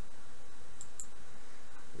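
Computer mouse clicking twice in quick succession about a second in, over a steady background hiss.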